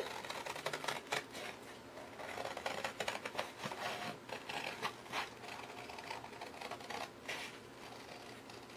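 Scissors cutting through a sheet of paper in a run of short snips, with the paper rustling as it is turned in the hand.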